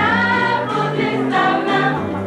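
A choir singing a lively song together over band accompaniment, with a bass line moving in short steady notes underneath.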